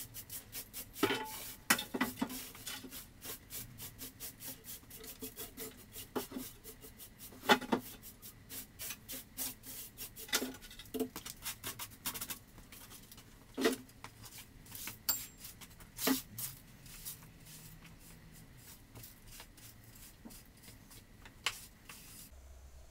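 Objects handled on a wooden workbench: a quick run of light clicks and rubbing, broken by sharper knocks, the loudest a couple of seconds in and about a third of the way through. The sounds thin out over the last few seconds.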